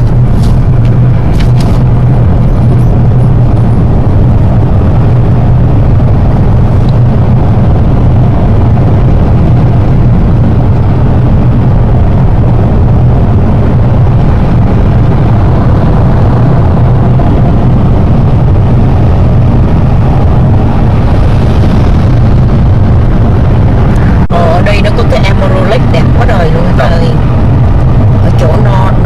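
Steady, loud, deep drone of a car's engine and tyres heard inside the moving car's cabin. About 24 seconds in there is a brief break, then voices talk over the same drone.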